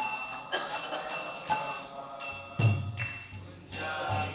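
Hand cymbals (kartals) struck in a steady rhythm, about two strikes a second, each strike ringing on, keeping time for a devotional chant between sung lines.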